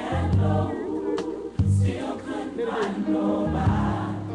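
Recorded gospel choir singing over a band, with bass notes and drum hits under the voices.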